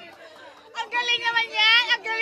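Excited voices of a group of adults: after a brief lull, shouting and a high-pitched, wavering squeal break out about three-quarters of a second in.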